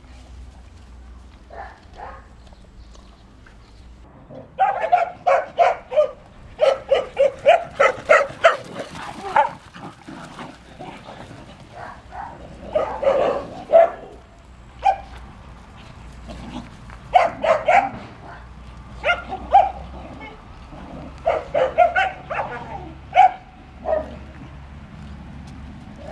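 Dogs barking in repeated runs of quick, sharp barks, several a second, starting about four seconds in, with short pauses between runs.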